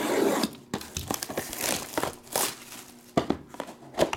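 Shrink-wrap on a sealed trading-card box being slit with a box cutter and torn away. It opens with a loud rip, followed by crinkling plastic and scattered sharp clicks that grow sparser near the end.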